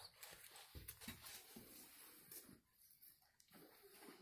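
Faint scratchy strokes of charcoal on drawing paper, with small clicks, mostly in the first two and a half seconds and quieter after.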